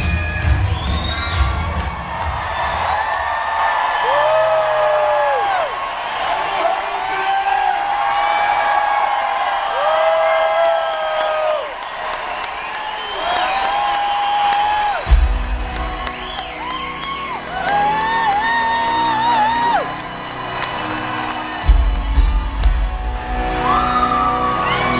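Live rock band and singer in an arena, recorded from the audience: long held vocal lines over the band, which thins out to a sparse backing before the bass and drums come back in about fifteen seconds in, with audience whoops and cheers.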